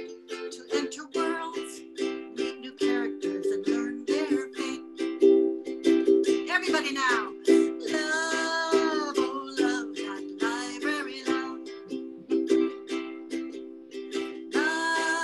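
A woman singing while strumming chords on a ukulele in a steady, rhythmic pattern.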